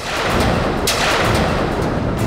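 Dramatic sound-effect sting on a TV serial soundtrack: a sudden loud crash that stays loud, with a second sharp hit just under a second in.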